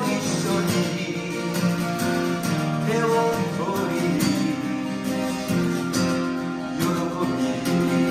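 Two acoustic guitars strummed together, playing an instrumental passage of a folk-style song.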